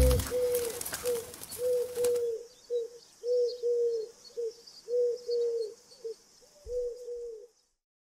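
Dove cooing: a run of short coos, singly and in pairs, at a steady low pitch, with the tail of music fading out in the first two seconds.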